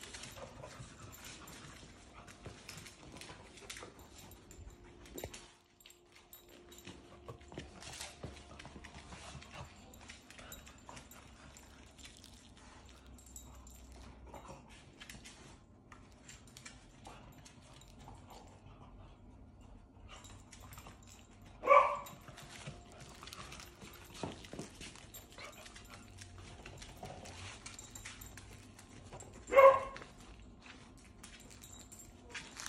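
A dog barks twice, short and loud, about eight seconds apart in the second half. In between come faint clicks and scuffles of claws on a wood floor.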